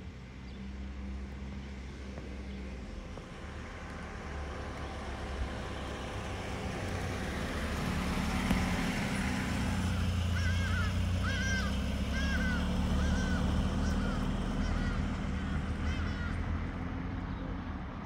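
A 1987 Volkswagen Fox's 1.6-litre four-cylinder engine running as the car drives past, its sound growing louder toward the middle and easing off near the end. Birds call repeatedly in short chirps through the second half.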